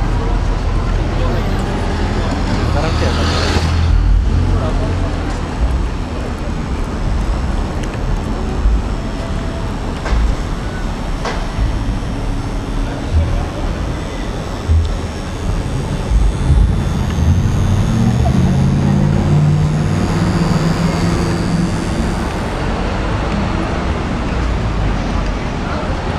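Night city street ambience: road traffic running past with a steady low rumble, and people's voices in the background. A louder rush of passing traffic comes about three to four seconds in.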